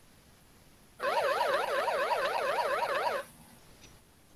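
Electronic sound effect from the Wordwall gameshow quiz as the chosen answer is revealed and marked correct. It is a warbling tone that swings up and down about four or five times a second, starts about a second in and cuts off suddenly about two seconds later.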